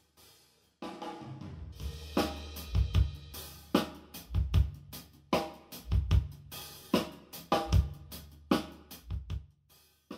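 A recorded drum-kit groove played over studio monitors in a small control room and picked up with a dummy-head microphone, so the kit carries the room's acoustics. It starts about a second in, with bass-drum strokes recurring under hi-hat and cymbal wash.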